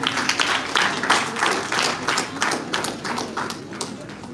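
Audience applauding: many hands clapping at once, thinning out and dying away near the end.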